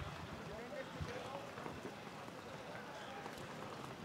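Faint, steady outdoor background noise with distant, indistinct voices.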